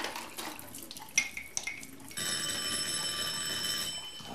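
Electric doorbell ringing: a steady, evenly pitched ring that starts about halfway through and holds for nearly two seconds. Before it come a few faint clicks of cutlery and one sharp tap.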